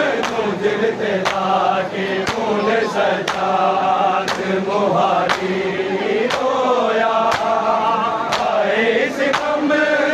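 A crowd of men chanting a noha lament in unison, with sharp chest-beating strikes (matam) landing together about once a second in time with the chant.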